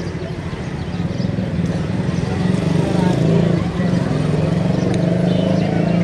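Several people talking over one another, with a vehicle engine running underneath; it grows a little louder about a second in.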